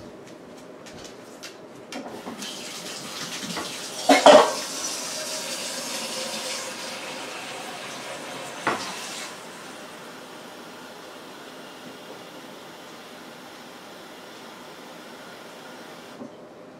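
Water rushing for about seven seconds, with loud knocks about four seconds in and again near nine seconds, as the rushing stops.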